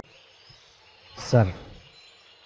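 Speech only: a single spoken word, "Sir", about a second in, over a faint steady background hiss.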